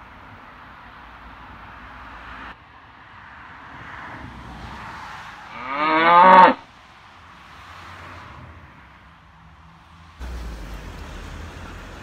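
A cow mooing once, a short call about six seconds in.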